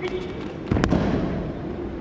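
An Aikido partner's breakfall onto tatami mats as he is thrown: one heavy thud with a sharp slap about three quarters of a second in, over the steady background noise of a large hall.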